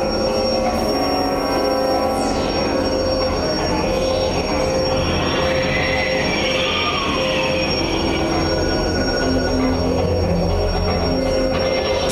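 Industrial electronic music played live: a dense, steady drone with a high screeching tone held over it and a falling sweep about two seconds in.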